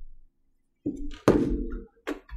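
A woman's groan of frustration, muffled by the hand pressed over her mouth. It comes in two parts about a second in, the second louder and more abrupt.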